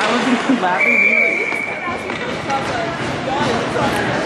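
Spectators talking close by in an ice rink, with one steady, about one-second whistle blast just under a second in: a referee's whistle stopping play.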